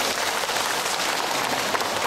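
Audience of many people clapping their hands in applause.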